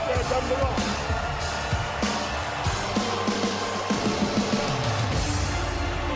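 Wrestling entrance theme music with a drum kit playing a steady beat under the rest of the track.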